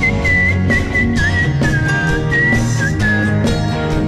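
Live rock band playing, with a high, thin lead melody that holds notes and dips and slides in pitch, over bass guitar, electric guitars and keyboard.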